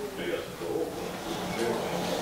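A person's voice singing softly in short, drawn-out notes.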